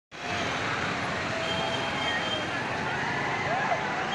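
Busy street noise: many voices of a crowd mixed with motorbike traffic, steady throughout.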